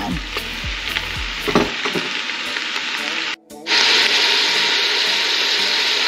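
Raw ground beef sizzling in melted butter in a large pot as it begins to brown. The steady sizzle cuts out for a moment a little over three seconds in, then comes back louder.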